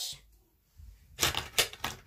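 Scratchy, crackling rustle of a makeup brush being wiped clean, starting about a second in as a run of quick rough strokes with a few sharp clicks.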